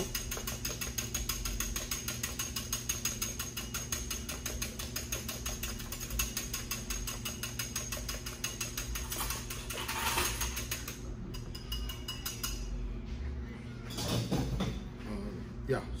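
Hand wire whisk beating powder and a little cold water in a glass measuring cup, the tines clicking rapidly and evenly against the glass. The whisking stops about eleven seconds in.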